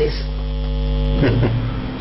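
Steady electrical mains hum, a low buzz with evenly spaced overtones, in a pause in the talk.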